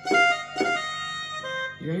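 Yamaha PSR-E473 keyboard playing in F major: several notes struck close together at the start and left ringing, then another note about a second and a half in. A man's voice comes in right at the end.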